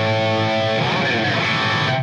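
Electric guitar played through a Boss ME-70 multi-effects processor set to its Stack preamp model, giving a distorted chord that rings on. The notes slide in pitch about halfway through and the chord is cut off abruptly at the end.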